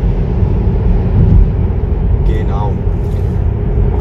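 Steady tyre and road noise inside the cabin of a moving Tesla Model 3 electric car, a low even rumble. A brief bit of voice comes about halfway through.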